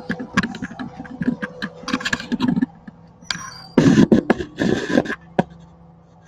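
Handling noise of a phone camera working close against a dry grass nest: a run of sharp clicks and taps, with two longer scratchy rustling bursts, the louder one about four seconds in.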